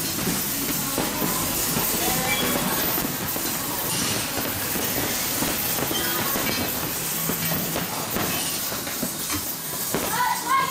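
Many boxing gloves landing on hanging heavy bags at the same time, a dense and unbroken clatter of overlapping thuds.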